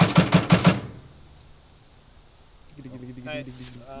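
Starter cranking the diesel engine of an early-1960s John Deere crawler loader on 24 volts, turning it over with an even beat of about five pulses a second that stops abruptly about a second in.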